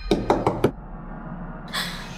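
A hand knocking on a wooden door, four quick raps in the first second. A short hiss follows near the end.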